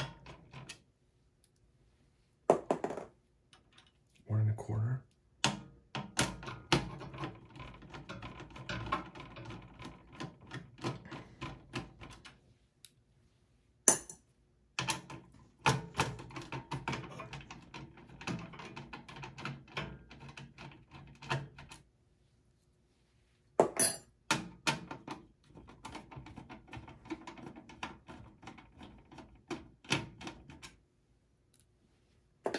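Screwdriver taking out the small Phillips screws that hold a desktop motherboard in its steel chassis: several runs of rapid clicking and scraping as it turns, with two sharp metallic knocks, one midway and one near the end.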